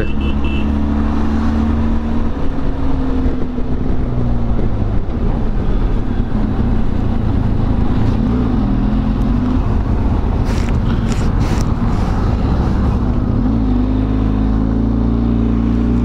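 Benelli TRK 502X parallel-twin engine running at highway speed under a constant rush of wind. The engine pitch sags after the first few seconds, then climbs again near the end as the throttle opens.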